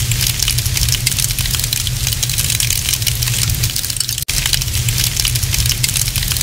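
A fire sound effect for a flaming logo animation: dense small crackles over a steady low rumble. It breaks off for an instant about four seconds in and then carries on.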